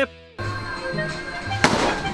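A baseball bat hitting a ball in a batting cage: one sharp crack with a short ring, about one and a half seconds in, over quiet background music. At the very start, louder music cuts off abruptly.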